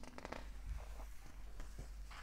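A picture-book page being turned by hand: a faint paper rustle with a few soft ticks.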